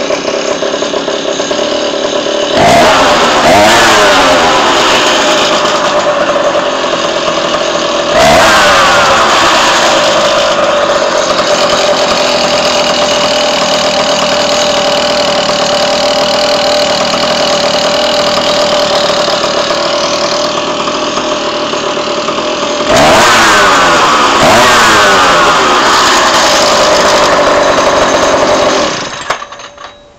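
Small two-stroke engine with an expansion-chamber pipe and HP40 carburettor idling, revved three times and dropping back to idle after each, the last burst longer. It shuts off near the end.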